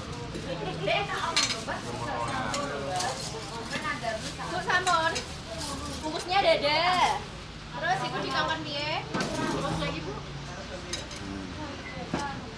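Spoons and serving utensils clinking against ceramic plates and bowls, with plastic bags handled, over several people's voices.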